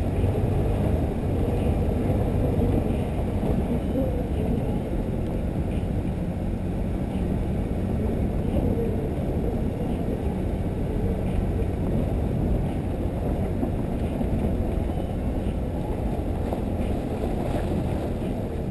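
Wind noise on the microphone of a GoPro mounted outside a moving Toyota 4Runner. It is a steady low rumble, with the vehicle's driving noise underneath.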